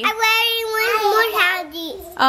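A young child's voice singing one long, high held note that wavers slightly in pitch and drops away just before the end.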